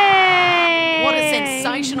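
A woman's long, drawn-out celebratory cheer into a microphone, held for about two seconds as its pitch slowly falls, with a second voice joining in about a second in.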